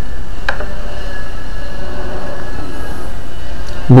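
Steady low electrical hum and background noise of the voice-over recording, with one sharp click about half a second in.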